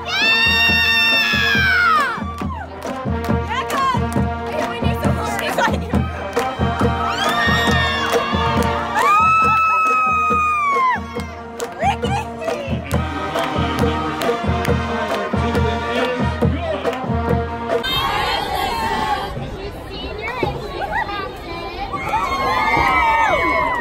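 High school marching band playing in the stands: brass with long held notes over a steady low drum beat. The band stops about 18 seconds in, and crowd noise and shouting take over.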